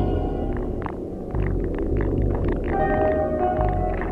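Experimental electronic music played live: a deep sub-bass rumble that drops out briefly just after a second in, scattered glitchy clicks, and held synth tones that come in near the end.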